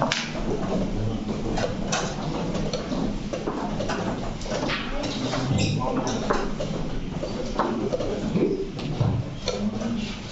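Chess tournament hall: irregular clicks of wooden chess pieces being set down and chess clock buttons being pressed at several boards, over a low murmur of voices.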